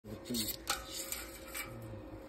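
A short spoken word or two, with a single sharp click a little under a second in and a faint steady hum behind.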